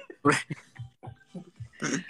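A man laughing in short, bleat-like bursts.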